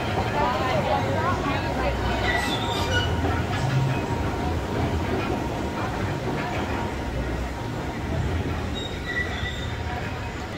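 Steady rush of churning whitewater from a rafting ride's rapids, with faint voices mixed in.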